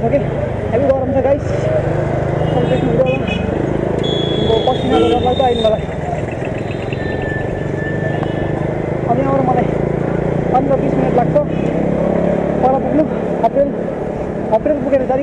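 Busy street traffic heard from a moving bicycle: motorcycle and auto-rickshaw engines running with a steady low hum, and people's voices throughout. A short high horn-like tone sounds about four seconds in, and a fainter one a few seconds later.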